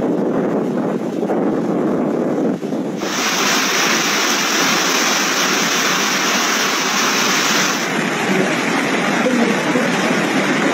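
Typhoon wind and rushing water on amateur recordings, with wind buffeting the microphone. About three seconds in, the sound cuts to a louder, hissier rush, and near eight seconds it cuts again to a duller rush.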